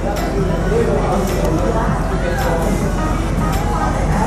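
Restaurant ambience: background voices of other diners and background music, with a few light clinks of metal cutlery.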